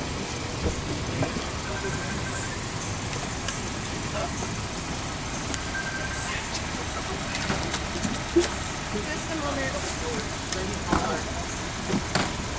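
Steady outdoor background noise with faint, low voices and a few short knocks, the sharpest about eight and a half seconds in.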